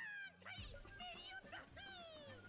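Anime episode soundtrack playing quietly under the stream: music with high-pitched shouting voices that fall in pitch, in several short bursts.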